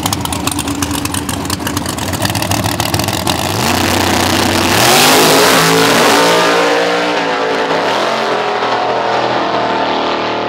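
Drag-racing car engine held at the start line with a rapid, even pulsing, then launching about three and a half seconds in. It accelerates hard down the strip, its pitch climbing and dropping back at each gear change.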